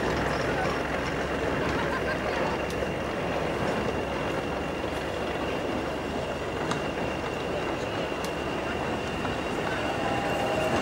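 Old four-wheeled railway goods wagons rolling slowly along the track, a steady running noise of wheels on rail with a few sharp, irregular clicks.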